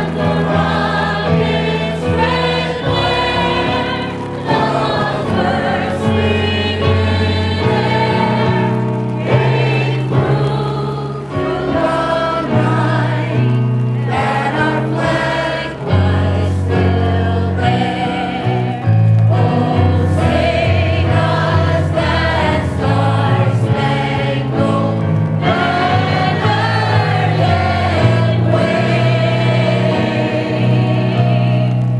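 Singing with electronic keyboard accompaniment: held vocal lines over bass notes that change every second or two.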